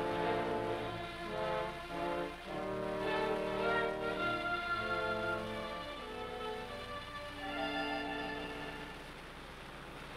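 Dramatic background music: sustained chords that shift every second or so, dropping in level near the end. It is a bridge between two scenes of the radio play.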